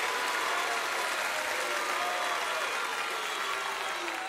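Theater audience applauding steadily for a contestant who has just been named, the applause that decides the winner.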